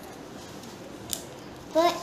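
Paper being folded by hand: a single short crisp click of the sheet being creased about a second in, over steady background hiss. A child starts speaking near the end.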